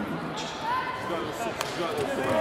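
Voices echoing in a large sports hall, with a sharp thud about one and a half seconds in.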